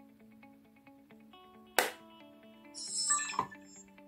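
Handling noise from a handheld camcorder as its flip-out screen is turned: a sharp click about two seconds in, then a short scraping rustle about a second later. Faint background music of plucked notes runs underneath.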